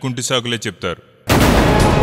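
A man speaking briefly, then a little over a second in, a sudden loud boom-like hit that opens a dense stretch of dramatic background music with held tones.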